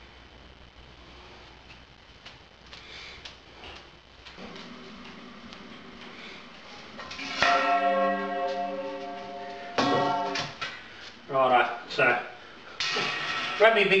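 Large stainless steel stockpots clanging and ringing as they are handled and set on the stove. A loud bell-like ring sounds about seven seconds in and fades over a couple of seconds, followed by several more metallic knocks and rings near the end.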